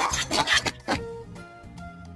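A donkey braying, a loud rough hee-haw that ends about a second in, over light children's background music that carries on afterwards.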